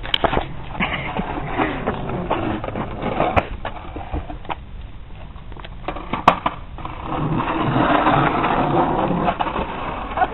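Skateboard on asphalt: wheels rolling and the board clacking against the ground. There is a sharp clack about six seconds in, and a louder stretch of rolling noise over the last three seconds.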